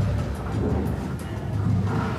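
Background music score with a deep, sustained bass and faint light ticks.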